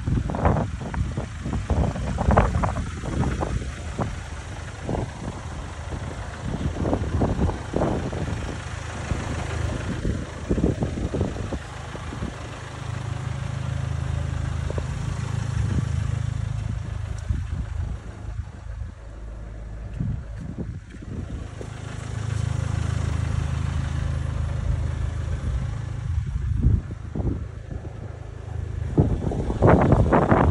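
A vehicle engine running steadily, a low hum that swells louder twice, with gusty, uneven noise on the microphone early on.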